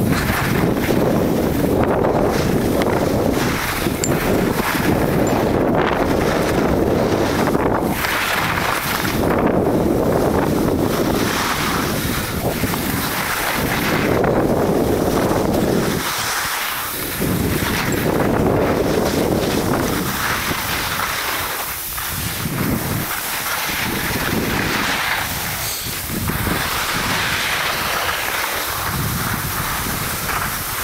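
Wind rushing over the microphone of a camera carried by a skier descending a slope, swelling and easing every few seconds, with the hiss of skis sliding on snow under it.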